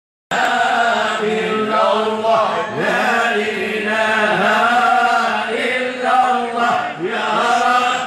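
A group of men chanting Moroccan amdah, devotional praise songs for the Prophet, with many voices sounding together over a steady low held note. The chant cuts in abruptly just after the start.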